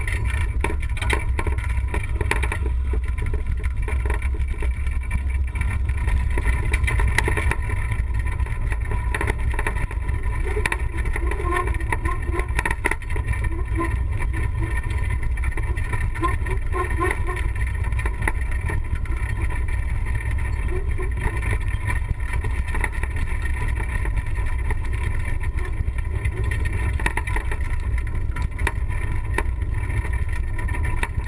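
Wind rumble on a camera microphone and the rattle of an off-road wheelchair rolling down a rough dirt and gravel track: a steady low rumble with many small knocks and clatters.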